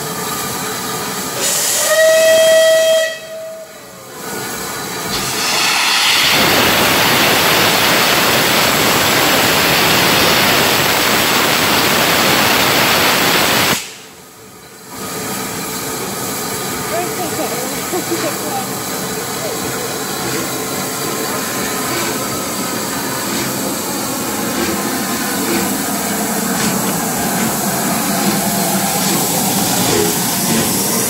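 Merchant Navy class three-cylinder steam locomotive 35028 Clan Line sounds its whistle once, briefly, about two seconds in. Then a loud, steady hiss of steam lasts several seconds. After that the locomotive pulls away, and the noise of its exhaust and of the moving train grows louder as it comes past.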